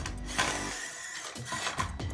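A small 1 lb FingerTech Viper kit battlebot driving on a hardwood floor, its little drive gearmotors whirring, with a knock about half a second in.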